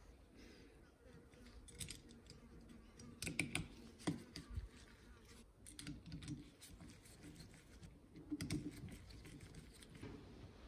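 Faint metal clicks and light scraping of a Phillips screwdriver turning small screws into the power valve retainer of an aluminium two-stroke cylinder, in a few short clusters.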